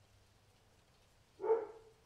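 A dog barks once, a single short bark about one and a half seconds in.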